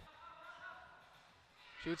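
Faint ambience of a basketball game in play, with a few thin, faint high tones about half a second in.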